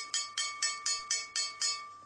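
A small hammer striking a hanging metal semantron in a quick, even rhythm of about four blows a second, each blow ringing on. The strikes stop shortly before the end.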